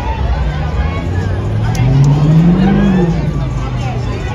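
A vehicle engine revs up and back down once, rising and falling in pitch over about two seconds, over crowd chatter.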